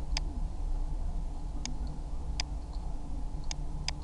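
Computer mouse buttons clicking, about five separate sharp clicks spaced irregularly over a steady low hum.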